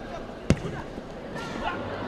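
A ball struck once, a single sharp thud about half a second in, over the background voices of a crowd.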